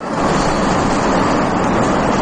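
Loud, steady rushing outdoor noise on a phone recording, like wind on the microphone mixed with roadside ambience, with no distinct events.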